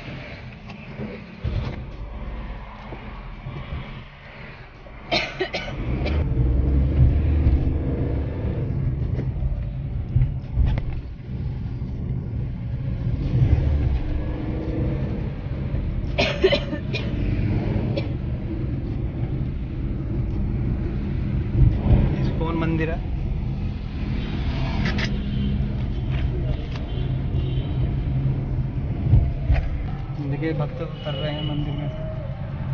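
Road and engine noise heard from inside a moving car: a steady low rumble that grows louder about five seconds in, with a few brief knocks or rattles along the way.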